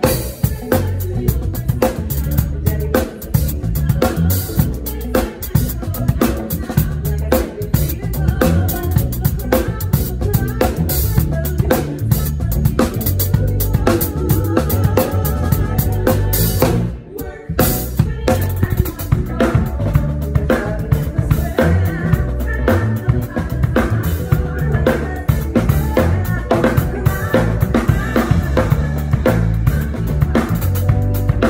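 Live drum kit playing a driving groove of kick, snare, toms and cymbals with musical accompaniment. The music cuts out for a moment about 17 seconds in and comes straight back.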